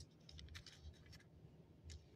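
Faint, scattered scratches of a pen writing on a thin Bible page, over a low background hum.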